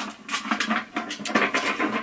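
Handling noise as a gold decorative box draped with strands of pearl beads is moved and set down: several short clicks and clatters with rustling between them.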